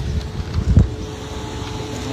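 Wind rumbling on an outdoor phone microphone, with a louder gust a little under a second in, over a faint steady hum.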